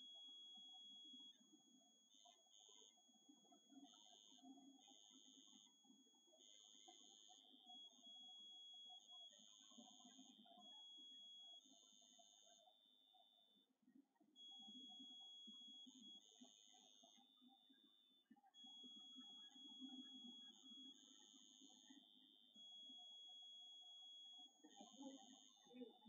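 A faint, steady high-pitched electronic whine that breaks off and comes back every second or two, with short louder stretches, over a faint low murmur.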